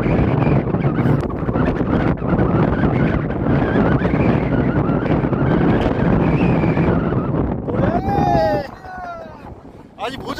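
Strong wind buffeting the microphone, a loud steady rumble that drops away sharply about eight and a half seconds in, with a brief voice just before the drop.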